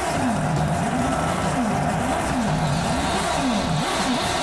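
Race-car engine sound effect revving up and down over and over, about two swoops a second.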